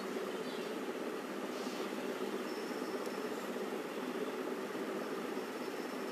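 Steady background noise with no distinct events, a low even hiss with a faint thin high tone in parts.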